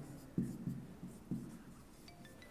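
Marker pen writing on a whiteboard: about four short, faint strokes in the first second and a half.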